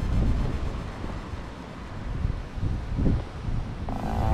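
Wind buffeting the camera's microphone, a low rumble that rises and falls.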